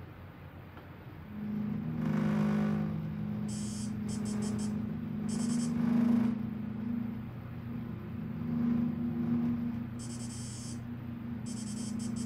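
DVD menu background audio played through a TV's speakers. A low steady drone comes in about a second in, and high electronic warbling pulses over it twice.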